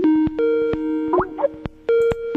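Electronic telephone tones on a call line. A rising glide goes into a steady pitched tone, a second higher tone joins about half a second in, and a series of sharp clicks breaks through the tones.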